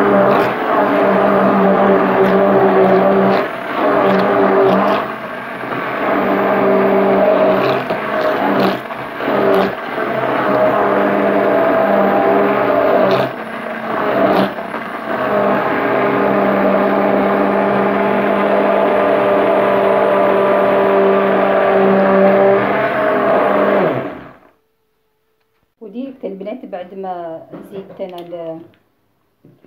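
Electric stick blender running at speed in a plastic bowl of egg, orange and oil batter, a steady motor hum that dips briefly a few times and stops about 24 seconds in.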